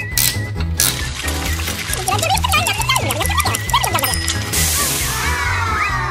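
Upbeat children's background music with a steady beat, overlaid with playful sound effects: a warbling tone, short pitch glides, and a hissing burst lasting about a second that starts about four and a half seconds in.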